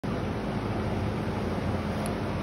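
Steady background noise with a faint low hum and no distinct events.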